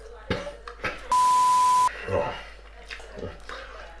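A single steady high-pitched bleep lasting under a second, about a second in. It is the usual censor bleep laid over a word, and it stands out loudly against a man's low muttering.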